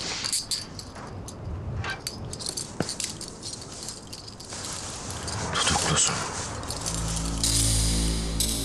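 Scattered light metallic clinks and clicks with faint rustling, then a dramatic score of low held notes swells in about seven seconds in.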